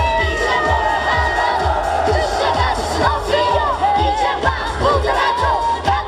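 Live pop music with a steady beat played loud over a concert sound system, with a crowd cheering and shouting over it.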